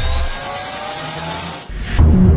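Logo-intro sound effect: slowly rising tones over a rough, scraping hiss, swelling into a whoosh near the end.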